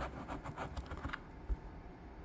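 Latex coating being scratched off a scratch-off lottery ticket: a rapid run of short scraping strokes that stops after about a second, followed by a soft low knock.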